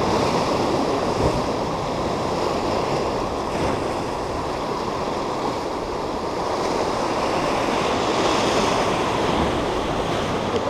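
Sea surf washing and breaking over rocks, a steady rushing noise that swells and eases slowly, with some wind buffeting the microphone.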